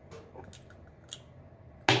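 A few light clicks and taps of a small metal lighter and pliers being handled, then one sharp click near the end.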